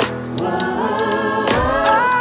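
Music: the intro of a Ukrainian song, with sustained sung vocals over the band. A sharp drum hit lands at the start and another about a second and a half in.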